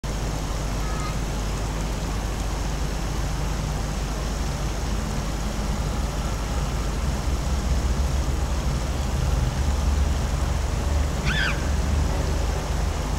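Steady low rumble and hiss of outdoor background noise, growing a little louder about halfway through, with a brief high-pitched sound shortly before the end.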